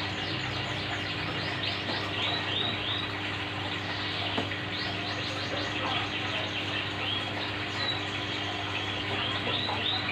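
Aquarium air stone bubbling steadily over a low steady hum, with small birds chirping repeatedly in quick runs of short notes in the background.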